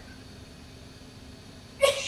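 A quiet pause in the talk: faint steady hum and hiss of room tone. A voice starts up just before the end.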